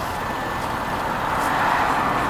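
Road traffic noise from a motor vehicle on a city street, growing louder in the second half.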